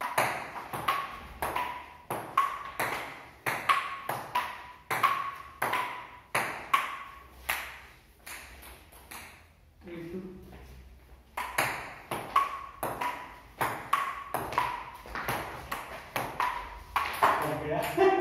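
Table tennis ball clicking back and forth between the paddles and the wooden table top in a quick rally, several sharp knocks a second with a brief ring. The strikes pause for about a second, ten seconds in, then start again.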